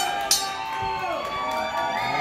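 Wrestling ring bell struck twice in quick succession right at the start, then ringing on as a steady multi-tone ring that slowly fades, signalling the start of the match.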